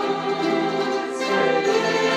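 Youth string ensemble of violins and mandolins playing a piece in held chords, the harmony moving to a new chord about a second in.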